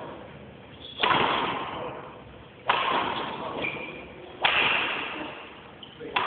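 Badminton racket smashing shuttlecocks three times, about every second and a half. Each hit is a sharp crack that rings on in the echo of a large hall.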